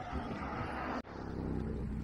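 Road traffic going by alongside: a steady hum and noise of engines and tyres. The sound cuts out abruptly about a second in, then carries on.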